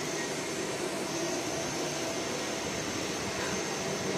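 Steady background noise, an even hum and hiss with a faint high whine in it, and no distinct events.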